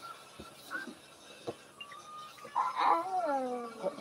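A pet animal's cry: after a couple of quiet seconds with a few faint clicks, one drawn-out call that falls in pitch near the end.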